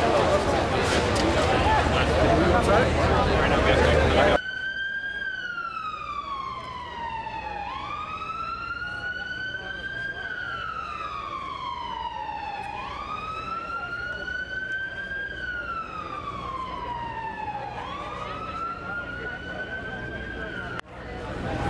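Loud crowd and street noise for about four seconds, cut off abruptly. Then an emergency-vehicle siren wails, rising and slowly falling in pitch about every five seconds, over quieter background noise.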